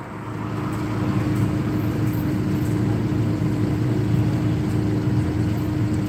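Vehicle engines in slow city traffic heard from inside a car: a steady hum with one held tone, growing louder about a second in as a motor scooter draws up close alongside.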